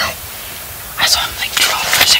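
Whispered speech, starting about a second in after a brief lull of steady hiss.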